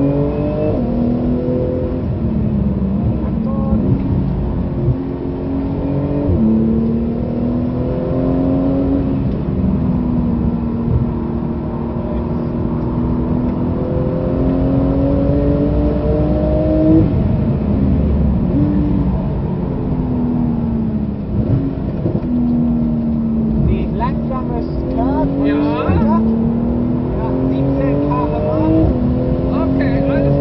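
Porsche 911 GT2 RS's twin-turbocharged 3.8-litre flat-six heard from inside the cabin under hard acceleration. The engine note climbs in pitch and drops back at each of several quick upshifts, holds a lower steady drone for a few seconds midway, then climbs again.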